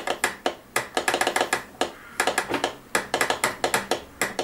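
A Morse telegraph straight key being tapped by hand, its lever clicking quickly against its contact in uneven bursts with short pauses between them. The key makes bare mechanical clicks with no beep tone.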